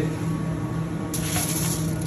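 Water poured from a jug into a stainless-steel roasting tray under a meat rack, splashing steadily, with a brighter hiss from about a second in.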